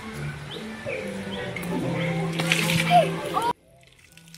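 Background music with children's voices, and a short hiss of water spraying up from a ground jet about two and a half seconds in. The sound drops off suddenly just before the end.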